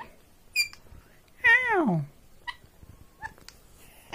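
Indian ringneck parakeet giving a short high chirp, then a drawn-out "ow" whose pitch slides steeply down, mimicking a human cry of pain.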